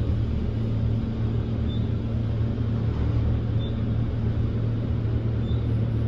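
KONE traction elevator car travelling upward, a steady low hum and rumble of the car in motion heard from inside the cab, with faint short high pips about every two seconds.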